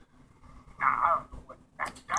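A pet animal's short cry about a second in, with a fainter one just before the end.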